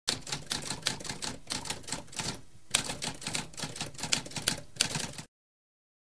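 Typewriter typing rapidly, a quick run of sharp key strikes with a short pause about two and a half seconds in, stopping a little after five seconds.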